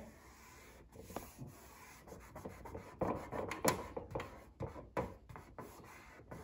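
Hands rubbing and smoothing wood-grain contact paper flat onto a tree collar: a faint, uneven series of rubbing strokes, louder about three to four seconds in.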